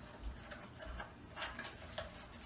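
Irregular light plastic clicks and taps from an upright bagless vacuum cleaner being handled while it is switched off, with a small cluster of clicks a little after halfway.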